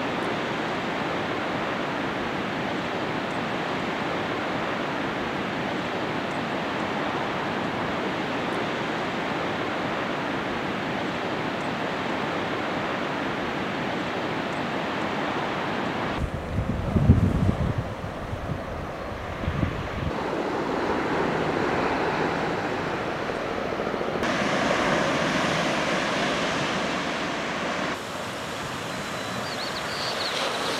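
Ocean surf washing on a rocky shore, a steady hiss of water noise. A little past halfway, a few seconds of wind buffet the microphone with low gusty rumbles, the loudest part. Then surf noise returns, changing tone a couple of times.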